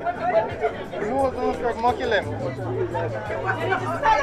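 Several people talking at once, too mixed to make out words, over a low steady hum.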